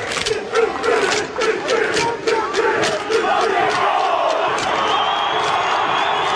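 A Maori haka and an Aboriginal war cry performed at the same time by two massed teams: men shouting and chanting together in unison. Sharp rhythmic strikes come several times a second through the first half, then the shouting carries on over a stadium crowd.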